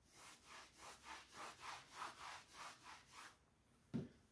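A chalk blackboard being wiped with a hand-held eraser: about a dozen quick back-and-forth rubbing strokes, three to four a second, stopping a little over three seconds in.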